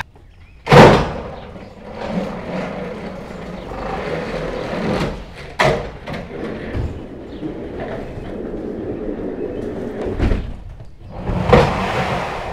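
A loud bang about a second in, then a few lighter knocks and thuds over a steady rustle.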